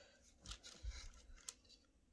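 Faint scraping of a paintbrush on a painted wooden cutout, with one sharp click about one and a half seconds in.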